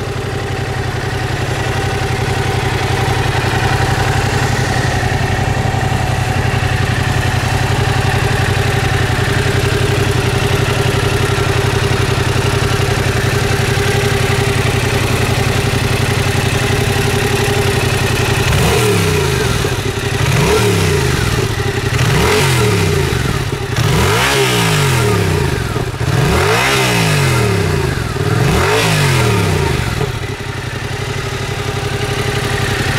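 Yamaha Tracer 700's 689 cc CP2 parallel-twin engine idling steadily. About two-thirds of the way in, the throttle is blipped about six times in quick succession, each rev rising and dropping back to idle.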